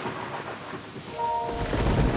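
Heavy rain falling, with a low rumble of thunder building from about one and a half seconds in.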